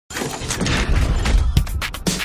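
Television channel ident music: a dense, noisy swell with a deep low rumble, like a crash effect, then sharp electronic beats starting about one and a half seconds in.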